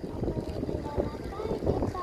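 Wind rumbling on the microphone of a slowly moving vehicle, with faint voices in the background.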